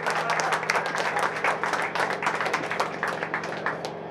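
Audience clapping and applauding between songs, with a steady amplifier hum underneath.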